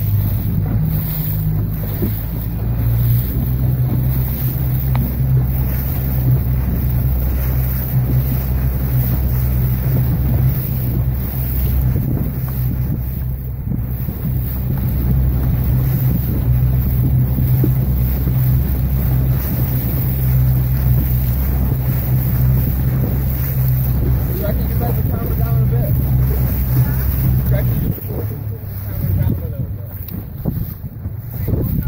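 Outboard motor of an inflatable boat running at a steady low speed, with wind buffeting the microphone and water noise; the engine note stops a couple of seconds before the end.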